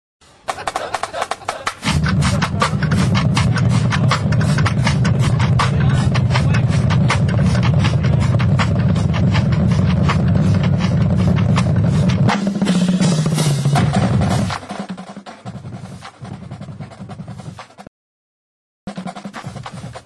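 Marching-band drumline playing a cadence: rapid snare-drum strokes over a heavy bass-drum layer. It falls to a quieter level about 14 to 15 seconds in, with a brief silent gap near the end.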